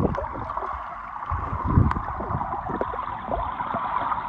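Flowing stream water heard with the microphone submerged: a steady, muffled rushing and gurgling with irregular low thumps from movement in the water.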